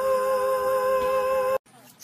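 A long, steady two-note chord held without change, cutting off abruptly about one and a half seconds in.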